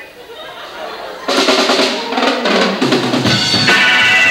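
A rock drum kit starts the song with a sudden loud snare and bass-drum fill about a second in. The full band with electric guitar comes in near the end.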